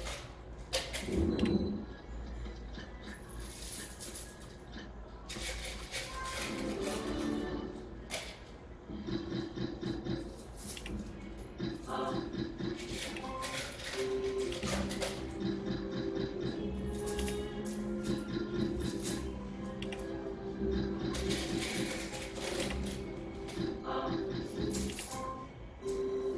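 Novoline slot machine electronic game music during free spins, with reels spinning and clicking to a stop, and short win chimes as credits are counted up.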